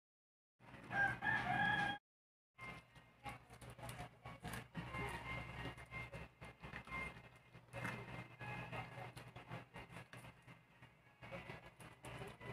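A rooster crowing once, loud and wavering, about half a second in and cut off abruptly, followed after a brief silence by a puppy chewing and licking mango: quieter irregular clicks and smacks.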